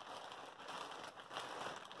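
Clear plastic bag of yarn skeins crinkling and rattling as it is handled and moved.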